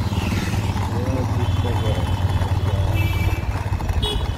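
Motorcycle engine running steadily while riding, heard from on the moving bike, with a faint voice about a second in.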